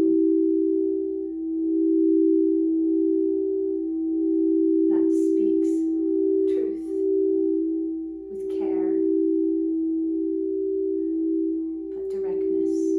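Two 432 Hz-tuned crystal singing bowls, one of them the G-note throat chakra bowl, sung by mallets held against the rims. Two steady tones sound together with a slow, regular waver.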